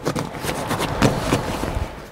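Foil-faced sound-deadening mat crinkling and crackling as it is pushed and pressed by hand into the rear corner of the truck cab.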